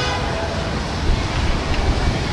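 Steady low rumble of vehicle engine noise on a city street, with no clear events standing out.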